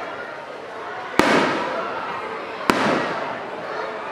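Two aerial firework shells bursting overhead about a second and a half apart, each a sharp bang followed by a rolling echo that dies away over about a second, over crowd chatter.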